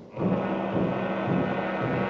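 Orchestral music for a dance number, holding a steady chord after a brief break at the very start.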